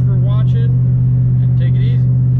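A Saleen Mustang's engine running at a steady cruise, heard inside the cabin as a constant low drone.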